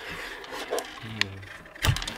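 Klask game pieces, the magnetic strikers and the ball, sliding and scraping over the wooden board in play, with a sharp knock near the end.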